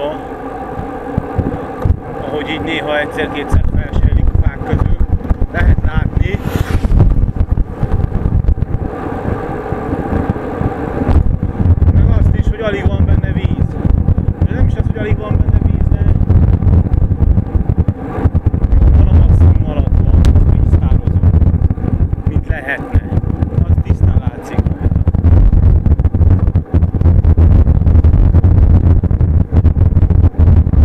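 Heavy wind rumble on the microphone of a bicycle-mounted camera riding along a mountain road, growing stronger in the second half. A motor vehicle's engine rises and fades at times.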